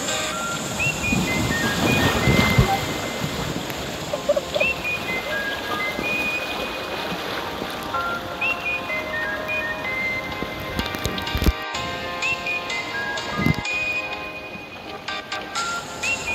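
Background music: a light melodic tune repeating a short phrase about every four seconds, over the rush of a shallow rocky stream.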